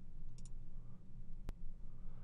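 Computer mouse clicks: a quick double click about half a second in, then a single sharp click about a second later, over a faint low hum.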